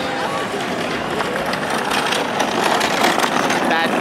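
Outdoor crowd noise: voices of people walking past and talking, with a dense rushing background that grows louder in the second half.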